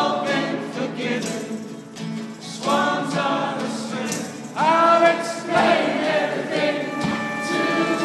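Live band music: many voices singing together like a choir over acoustic guitar and strings, with held notes and a sliding sung phrase about halfway through, heard from within the audience.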